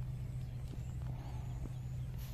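Watermelon leaves handled by hand, giving a few faint rustles and ticks over a steady low hum.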